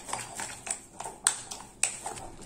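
A spoon beating thick semolina batter in a glass bowl: a steady stirring scrape with sharp taps of the spoon against the glass about every half second.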